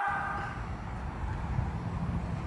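A low, steady outdoor background rumble that starts abruptly at a cut, under the last of a held musical tone fading out in the first half-second.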